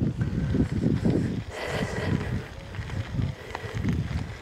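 Wind buffeting the microphone of a camera carried on a moving bicycle, an irregular low rumble mixed with the bicycle's tyres rolling over a gravel track.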